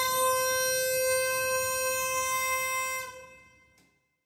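Uilleann pipes holding one long, steady final note, which dies away about three seconds in, followed by a faint click.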